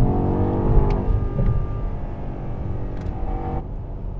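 BMW X5 M Competition's 4.4-litre twin-turbo V8 running at cruising speed on the expressway, with a steady engine note over tyre and road rumble. The sound dies down near the end.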